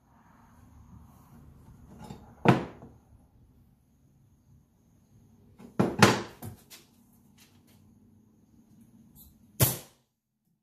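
Wooden thunks as a 2x4 is set and knocked into place on a glued stack, about 2.5 and 6 seconds in. Near the end comes one sharp crack of a pneumatic nailer driving a fastener into the wood.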